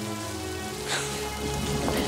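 Rain falling steadily, with sustained notes of background music underneath.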